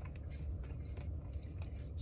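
A person chewing a bite of sugar cookie topped with sprinkles, with faint small crunches, over a low steady rumble inside a car.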